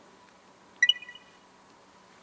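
A single sharp clack of a mahjong tile being set down on the table, with a brief high ringing tail, about a second in.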